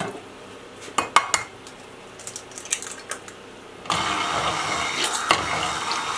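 A few light clicks and knocks, then, about four seconds in, an immersion blender switches on and runs steadily, beating raw eggs in a glass baking dish.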